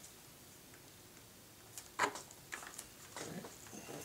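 Quiet hand-handling sounds of tape and a servo extension lead being worked by hand: a sharp click about halfway through, then a few lighter ticks and rustles.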